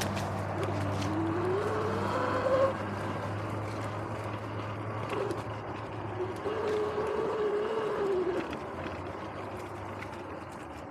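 Sur-Ron electric dirt bike's motor whining, its pitch rising as the bike speeds up about a second in and again in a rise-and-fall near the end. Underneath are steady tyre and wind noise from the dirt trail and small clicks and rattles from the bike, with a sharp knock at about two and a half seconds.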